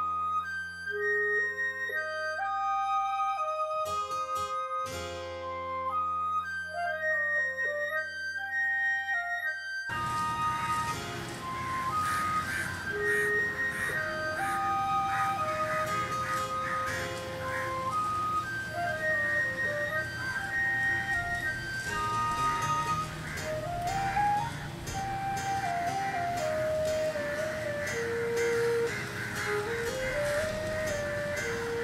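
Background music: a light instrumental melody of stepping notes that plays on without a break. From about ten seconds in, a steady hiss-like haze lies under it.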